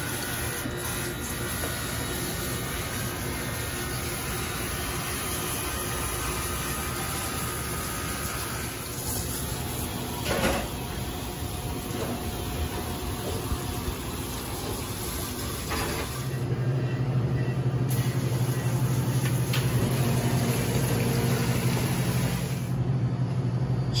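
Water spraying from a hose nozzle onto the steel walls of an emptied stainless-steel deep-fryer vat, rinsing it down after a boil-out. About two-thirds of the way through, a steady low hum joins in and the sound gets a little louder.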